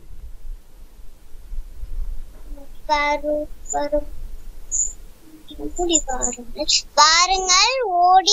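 A child's voice chanting a Tamil rhyme in short phrases, heard over a video call. The first three seconds or so are quiet except for a low hum.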